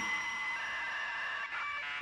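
Dial-up modem connecting: a steady high-pitched screech and hiss, with its tones changing about a second and a half in.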